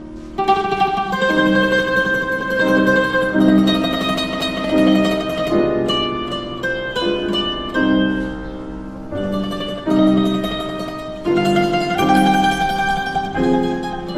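Mandolin and piano duo playing a classical sonatina in a minor key: the mandolin's plucked melody over piano chords, the music coming back in sharply about half a second in after a brief pause.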